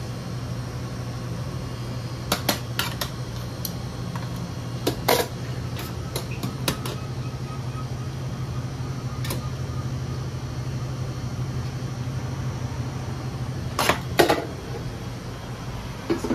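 Steady low mechanical hum of kitchen equipment, with scattered light clinks and clicks of metal tongs and utensils against steel pans and bins. The hum weakens near the end, just after two of the loudest clinks.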